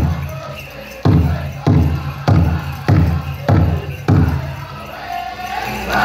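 Powwow big drum struck with six heavy, evenly spaced beats about two-thirds of a second apart, with faint singing between them. After the beats the sound drops back, and the full drumming and singing swell up again at the very end.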